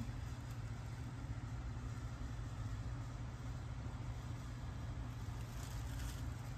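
Steady low rumble of outdoor background noise with a faint hiss above it, unchanging throughout.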